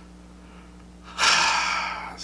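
A man's sharp, audible in-breath, like a gasp, starting about a second in and lasting under a second, over a faint steady hum.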